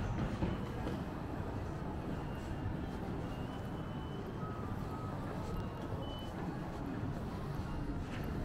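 Steady city street ambience with a low rumble of traffic, and a few short, high beeps in the middle.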